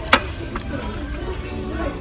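Background music and the steady hum of a shop interior, with one sharp click just after the start.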